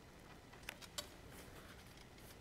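Near silence: room tone with two faint light clicks around the middle, from hands handling and pressing down card.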